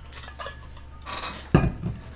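Drinking from a metal water bottle, then the bottle set down on a hard desk surface with a single sharp metallic clunk about one and a half seconds in.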